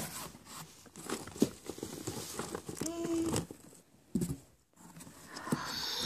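Paper and packaging being handled and rustled as gift items are unwrapped, a run of short rustles and taps, with a brief drop-out to near silence about four seconds in.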